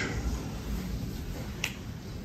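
Quiet room tone with a single sharp click about one and a half seconds in.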